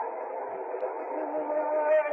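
Muffled, narrow-sounding archival recording from 1968: a steady background hiss and murmur. During the second half a held, sustained note comes in, the opening of a flamenco saeta sung by a cantaor.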